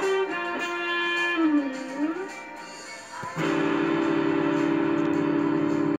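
Electric guitar (ESP LTD EX-50 through a Zoom 505 II multi-effects pedal) playing the closing lead of a rock song cover with held notes, one of which dips in pitch and comes back up. It fades, and about three seconds in a full held chord starts suddenly and rings steadily to the end.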